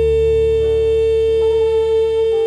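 Jazz recording ending on one long held high note, very steady, over sustained low chords from the band; higher notes shift above it about one and a half seconds in.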